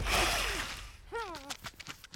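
Cartoon sound effects: a hiss fading away over the first second after a crash, a man's short falling grunt, then a quick run of light taps near the end.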